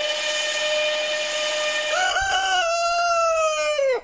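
An electric commuter train's horn sounds one steady held note over a hiss. About halfway through a rooster crows: one long call that wavers at the start, holds, and falls away at the end.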